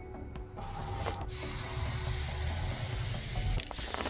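Aerosol spray paint can spraying paint onto a wall: one long, steady hiss that starts about half a second in and stops shortly before the end.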